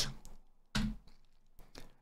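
Quiet computer keyboard strikes: a short dull thump a little under a second in, then a sharp single click about a second later, as the Enter key is pressed to run a command.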